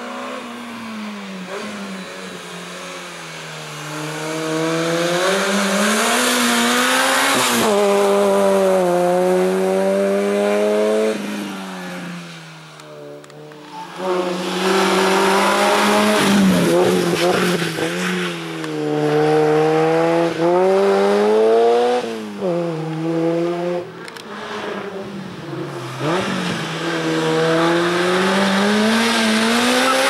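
Citroën Saxo race car's engine revving hard through a cone slalom. Its pitch climbs and drops again and again as the driver accelerates and lifts between the gates, with a brief dip in the sound about halfway through.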